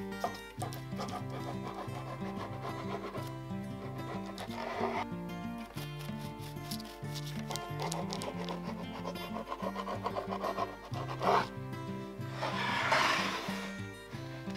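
Background music playing, over a knife cutting down through a baked sponge sheet cake. Noisy cutting strokes come about four seconds in and near eleven seconds, and a longer, louder stroke comes near the end.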